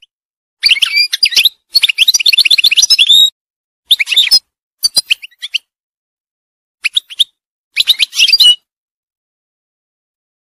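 European goldfinch singing: six bursts of rapid, high twittering song with short silent gaps between them, the longest phrase about a second and a half.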